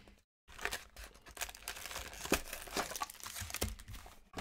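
A small cardboard box of trading-card packs being torn open and handled, with crackly crinkling of packaging and frequent small clicks and scrapes. The sound drops out briefly just after the start.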